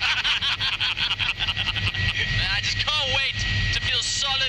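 Light helicopter in flight, heard from inside the cabin: a steady high whine over a low rotor rumble. In the second half, men's voices whoop and cry out in rising-and-falling calls over the engine.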